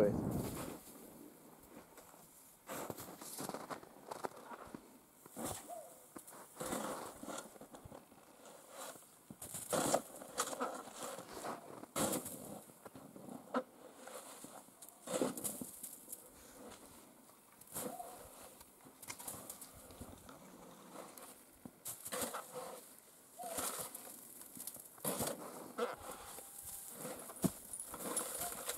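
Faint, irregular scrapes and crunches of a plastic snow shovel clearing snow off the top of round hay bales, a stroke every second or two.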